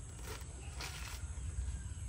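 Coconut husk being pried apart on a metal husking spike: a brief fibrous rasp about a second in, with a fainter one near the start.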